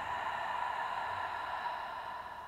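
A woman's long, slow exhale through the open mouth: a steady breathy sigh-out after a deep inhale through the nose, as part of a yogic breathing exercise.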